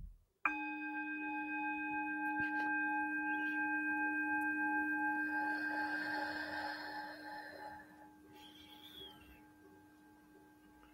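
Metal singing bowl struck once with a wooden mallet about half a second in, then ringing on with a steady hum of several overtones that swells and slowly fades.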